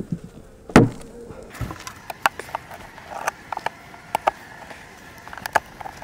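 Wooden frames in a beehive box being pried and shifted with a hive tool: a loud knock about a second in, then a run of sharp clicks and knocks, over a faint steady buzz of honey bees.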